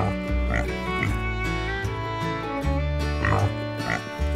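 Country-style background music with guitar, overlaid by cartoon pig oinks about half a second and a second in and again near the end.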